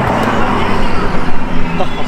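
2017 Ford GT, with its twin-turbo 3.5-litre V6, driving past at speed: a rush of engine and tyre noise right at the start that fades as the car moves away.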